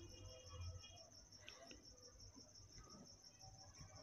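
Near silence: room tone with a faint, steady high-pitched insect trill pulsing evenly.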